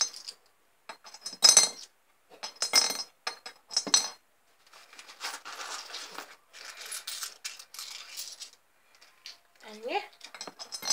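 Coins dropped into a money box: three sharp metallic clinks about a second apart, then a few seconds of softer, continuous jingling and rattling of coins.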